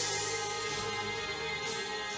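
A woman singing a worship song with instrumental accompaniment, holding long notes.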